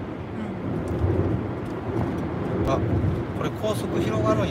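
Road and engine noise inside a moving van's cabin: a steady low rumble. A voice joins in faintly near the end.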